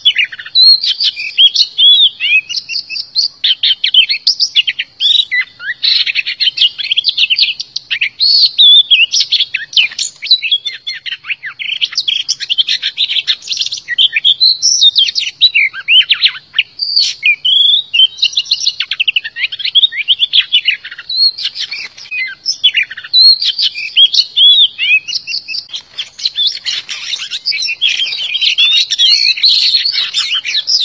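Oriental magpie-robin singing: a fast, varied run of whistles, trills and chattering notes with hardly a pause.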